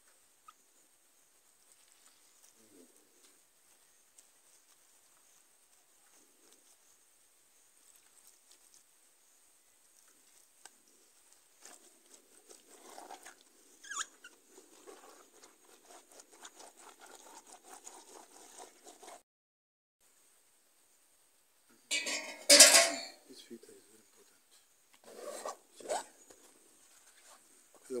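Hands mashing and squeezing wet Euphorbia hirta leaves in a metal bowl: faint rustling and squelching that comes and goes, with a few louder sudden noises near the end.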